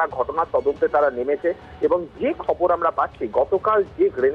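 Speech only: a man talking without pause over a phone line, the voice thin with little high end.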